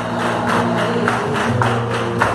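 Live flamenco music: held melodic notes over a steady rhythm of sharp beats, about three to four a second.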